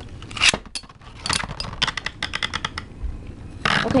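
Two metal Beyblade spinning tops clashing and scraping against each other in a plastic stadium: a sharp clack about half a second in, then a run of quick rattling clicks through the middle, and a short rush of noise near the end.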